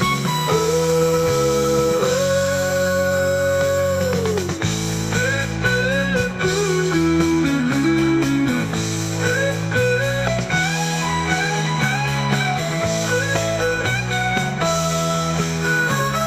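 Instrumental break of a 1970s-style rock song: a lead melody holds one long note early on, then plays short bending phrases over a steady chord and bass backing.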